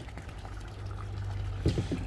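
Water flowing steadily through a pond box filter, over a low steady hum.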